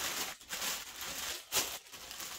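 Thin clear plastic bag crinkling and rustling as it is handled, with one louder, sharper noise about one and a half seconds in.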